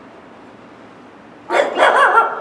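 Small Xoloitzcuintli (Mexican hairless dog) giving two short, sharp barks about a second and a half in.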